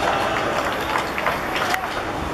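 Shouting and calling out from footballers and onlookers on an outdoor pitch as a goal goes in, with a few short sharp knocks.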